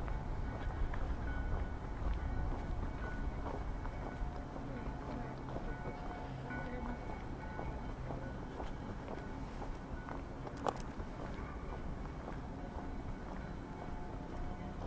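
Outdoor street ambience with music carrying across a square in sustained held notes and faint voices of passers-by. A low rumble sits underneath, strongest in the first couple of seconds, and there is a single sharp click about ten and a half seconds in.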